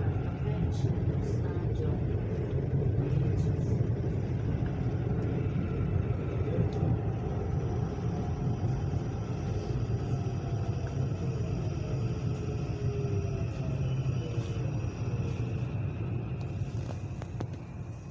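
Electric commuter train heard from inside the car as it slows into a station: a steady low rumble with a faint whine that slowly falls in pitch as the train slows. The sound dies away near the end as the train comes to a stop.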